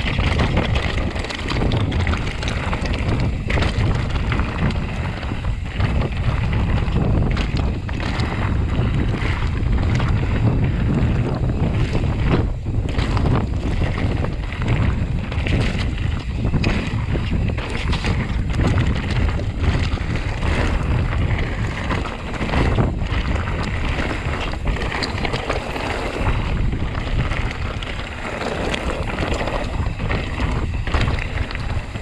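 Wind buffeting the microphone of a mountain bike's camera, with the tyres rolling over loose stone singletrack and the bike rattling and knocking over the rough ground.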